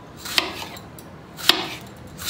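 Kitchen knife cutting tomatoes into wedges on a wooden chopping board, the blade knocking sharply on the board twice, about a second apart, with softer cuts between.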